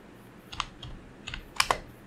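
Keystrokes on a computer keyboard: about eight irregular, separate clicks as a short word is typed.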